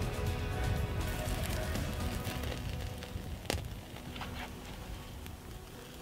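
Background music with steady held tones, over crawdads sizzling in rendered fat in a small frying pan held over a crackling campfire. A single sharp click comes about halfway through, and the sound slowly gets quieter toward the end.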